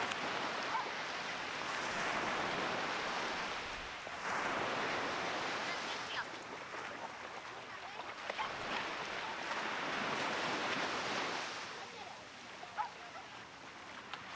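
Small ocean waves breaking and washing up a sandy beach, the surf swelling and falling back every few seconds and easing off near the end.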